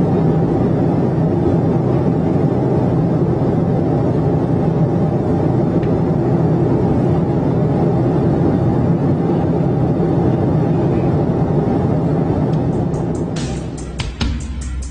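Steady aircraft cockpit noise: a loud, even rush of air with a low drone underneath. Near the end, music with sharp plucked strokes cuts in.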